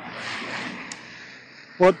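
A car passing on a wet road: an even tyre hiss that swells briefly and then fades away as the car moves off.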